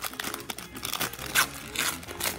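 Wrapper of a hockey-card pack crinkling and tearing as it is opened by hand, with sharper crackles about halfway through and near the end.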